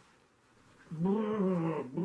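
A man's drawn-out vocal cry, one held sound about a second long in the second half, its pitch rising and falling gently.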